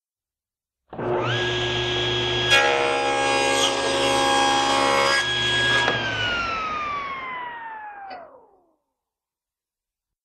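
Table saw starting up, its blade whine rising quickly to a steady pitch. About two and a half seconds in there is a sharp hit and the sound turns busier for a few seconds as wood is cut, then the motor is switched off and the whine falls steadily as the blade coasts down.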